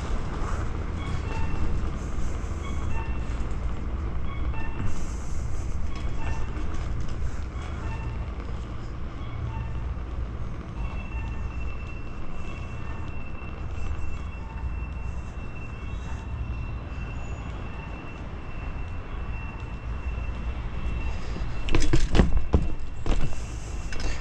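BMX bike rolling over paving stones: a steady low rumble of tyres and wind on the camera microphone. Near the end, a few loud knocks and rattles as the bike jolts.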